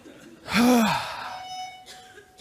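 A man's short sigh about half a second in, then a mobile phone's text-message alert: a steady held tone starting about a second and a half in.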